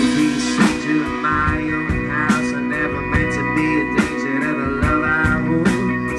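Live rock band playing an instrumental passage: electric guitar and bass guitar over a drum kit, with drum hits marking a steady beat.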